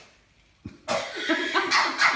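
A short knock just over half a second in, then loud, breathy bursts of excited laughter and shrieking from the players, coming in quick fits.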